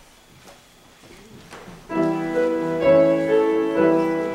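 Church organ beginning a hymn tune about two seconds in, with steady held chords moving from chord to chord: the play-through of the hymn before the congregation sings it. Before it, a quiet room with a few faint clicks.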